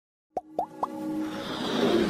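Three quick plop sound effects, each rising in pitch, about a quarter second apart, then a swelling whoosh that builds in loudness: the opening sting of an animated intro.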